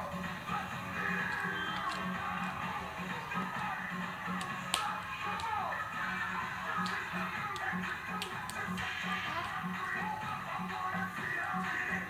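Music playing from a television set, with a steady beat of about two pulses a second. A single sharp tap stands out about five seconds in.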